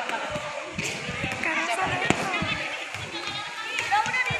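Irregular thuds of kicks and strikes landing on handheld kick shields and striking pads during pencak silat training, one sharper smack about two seconds in, under a group of young voices chattering and calling out.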